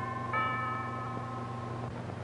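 Radio station chimes tolling the seven o'clock hour: one more chime is struck about a third of a second in, ringing over the fading earlier notes, and the chimes die away near the end, over a steady low hum.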